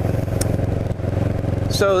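Kawasaki Ninja 650R's parallel-twin engine running steadily as the motorcycle cruises along the road.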